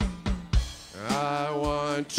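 Worship-song music: drum-kit strokes on snare, bass drum and cymbals, then a man's voice holding one steady sung note from about halfway through.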